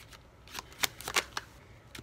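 Tarot cards being shuffled by hand, with about five separate sharp card snaps.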